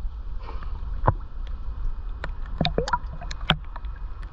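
Water sloshing and slapping right against a camera held at the waterline: a steady low rumble with a run of sharp splashes and drips, most of them in the second half.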